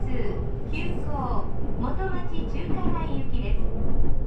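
Recorded onboard train announcement in a woman's voice, over the steady low rumble of the moving commuter train.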